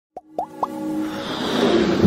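Intro sound effects: three quick upward-gliding plops in the first second, followed by a steadily swelling riser that builds in loudness.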